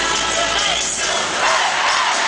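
Live pop-rock band with a male singer, heard from inside a loud crowd that cheers and sings along.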